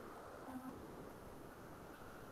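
Faint steady hum and hiss of an open microphone on a video call, with a brief faint tone about half a second in.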